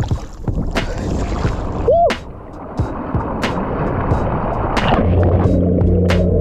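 Water rushing and splashing around a SeaDart electric underwater scooter moving along the lake surface. About five seconds in the sound turns muffled as it dives, and a steady low hum of its motor takes over underwater.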